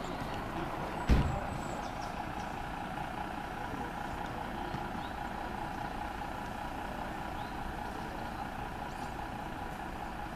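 Diesel engines of parked fire engines running steadily, with one loud thump about a second in.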